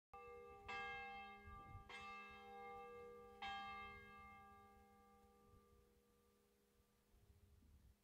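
A church bell struck four times at uneven intervals in the first three and a half seconds, each stroke ringing on and fading away over the following seconds. A steady low hum lies underneath.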